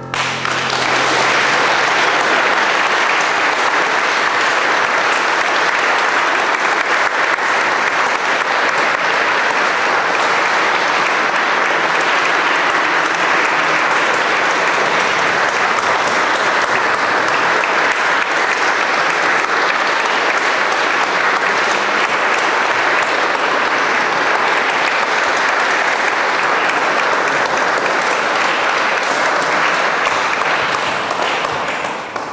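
Audience applause breaking out as a sung classical piece ends, building within the first second and then holding at an even level.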